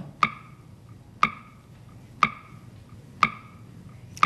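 Game-show countdown clock ticking once a second, each tick a short wooden-sounding knock with a brief ringing tone.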